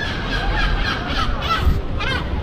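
Outdoor street ambience with a low rumble of wind on the microphone and a few short, faint bird calls.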